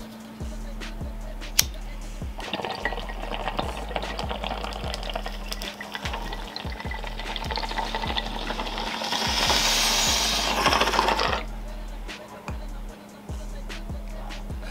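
Water bubbling through a glass beaker bong's showerhead downstem as smoke is drawn through it. It starts about two seconds in, grows louder near the end, and stops suddenly about eleven seconds in.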